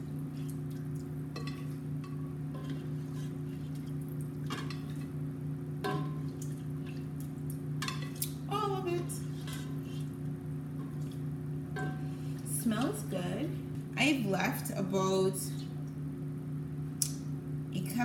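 Cooked butternut squash being spooned from a metal pot into a glass blender jar: a few sharp clinks and scrapes of the spoon against pot and jar, over a steady low hum.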